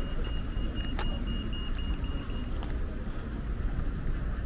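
Pedestrian crossing signal beeping rapidly at a high, even pitch, stopping about two and a half seconds in, over a low rumble of traffic.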